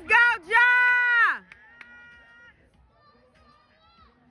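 A spectator yelling loudly, a short shout and then a held cheer that drops in pitch and stops about a second and a half in, followed by faint distant voices.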